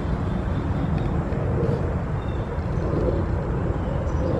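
Steady low outdoor rumble with no distinct events, swelling slightly around the middle.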